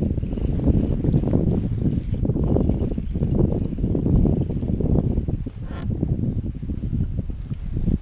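Wind buffeting the microphone: a loud, uneven low rumble that rises and falls.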